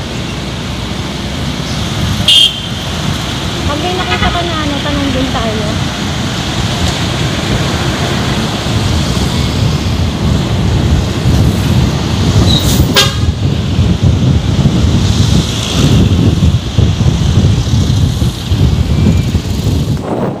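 Motorcycle riding through city traffic: steady engine and road noise with wind buffeting the microphone. A short, loud horn toot sounds about two seconds in, and another sharp sound comes near the middle.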